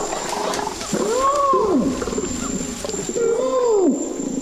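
Orangutan screams: two pitched calls, each rising and then falling over about a second, one after about a second and one near the end. This is a female orangutan protesting and fighting off a smaller male's advances.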